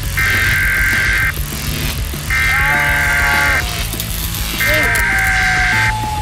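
Three long, steady electronic beeps from an added sound effect, each about a second long and evenly spaced, with a lower wavering tone under the second and third, over background music.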